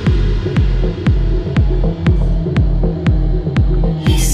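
House/techno beat: a four-on-the-floor kick drum with a falling pitch, about two beats a second, over a sustained synth bass, with a sharp click on each beat.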